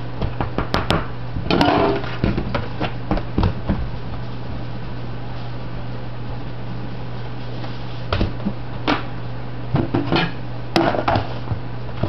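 A utensil stirring dry breading in a plastic bucket, knocking and scraping against its sides in clusters of quick clicks during the first few seconds and again about eight to eleven seconds in.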